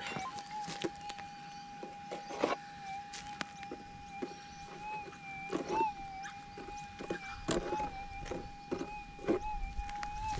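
Minelab GPX6000 gold detector holding its steady threshold hum, wavering only slightly as the coil sweeps back over the dug hole, with scattered light scuffs of the coil and boots on the dirt. The target signal has gone, which is typical of GPX6000 ground noise: a false signal from the soil, not metal.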